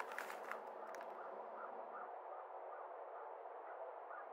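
Paper rustling and crinkling as a handful of mail is leafed through, fading out about a second in. Then a faint, evenly repeated chirp, about three a second, over a steady outdoor hum.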